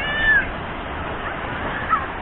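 A short high-pitched call that dips slightly at its end, then a few fainter short sliding calls near the end, over a steady noise of wind and surf.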